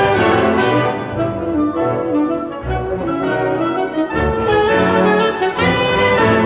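Orchestra playing a jazz concerto for saxophone and orchestra, with brass and bowed strings sounding together in sustained chords.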